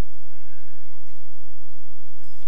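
Steady low electrical hum and hiss of the recording, with a few faint, short, high tones in the first second.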